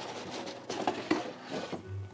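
Plastic board-game insert tray, loaded with cards, lifted out of its cardboard box: plastic scraping against the cardboard sides, with a few light knocks in the middle.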